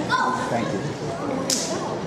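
Children's voices shouting together as they perform a kung fu form: one held shout lasting about half a second just after the start. About one and a half seconds in, a single sharp crack follows from the strikes.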